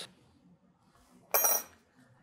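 A metal measuring spoon set down in a small ceramic ramekin: one short clink with a brief ring, a little over a second in.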